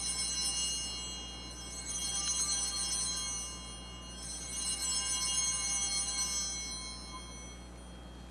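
Altar bells (Sanctus bells) rung three times, each a high, shimmering ring of about two seconds, marking the elevation of the chalice at the consecration of the Mass.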